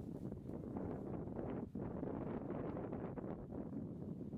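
Wind buffeting the microphone: an uneven low rumble with a brief drop in level not quite halfway through.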